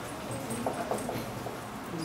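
Dry-erase marker squeaking on a whiteboard as lines are drawn, a few short squeaks in the first half.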